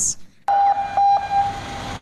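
Fire engine siren holding a steady tone over the truck's noise. It starts suddenly about half a second in and is loudest in two brief spells.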